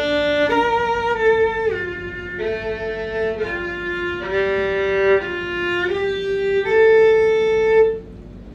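Solo violin played with the bow: a phrase of sustained notes changing every half second to a second or so, with two strings sounding together at the start and a couple of sliding drops in pitch, ending on a long loud held note.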